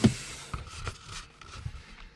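Handling noise in a car cabin: a sharp knock at the start, then a few faint clicks and rubs as a hand brushes the centre console and the camera is turned.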